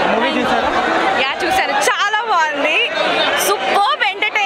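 Speech only: people talking into an interview microphone, several voices chattering over one another with a crowd behind.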